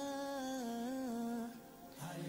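A voice quietly humming one long held note without instruments, stepping slightly down in pitch and fading out about a second and a half in.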